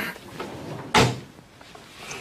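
A wooden wardrobe door being shut, making a single sharp knock about a second in.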